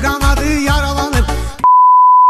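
Dance music with a heavy, pulsing beat and a bending melody, cut off about a second and a half in by a steady 1 kHz test-tone beep, the tone that goes with a TV colour-bar screen.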